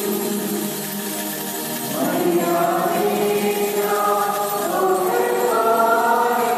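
Church choir singing a hymn, several voices together holding long notes. There is a softer stretch before a new, louder phrase begins about two seconds in.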